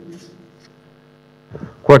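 Faint, steady electrical mains hum, a stack of even low tones, in a pause between words. A man's voice starts speaking again near the end.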